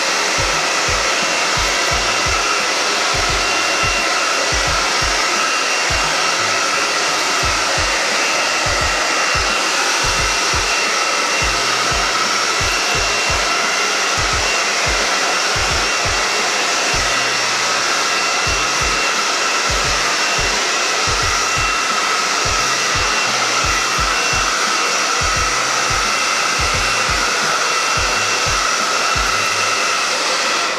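Handheld hair dryer blowing on hair without a break: a steady rush of air with a steady high-pitched motor whine in it.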